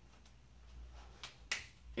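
A few faint ticks, then two sharp clicks about a quarter second apart near the end, the second the louder.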